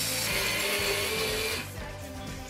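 A small power drill or driver running steadily for about a second and a half, a hissing whir that stops short, over background music.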